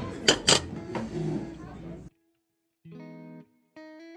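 Restaurant dining-room background of music and voices, with two sharp clinks of cutlery on a plate about a third and half a second in. The sound cuts off abruptly about two seconds in, and after a short silence two brief electronic tones play, the second stepping upward in pitch.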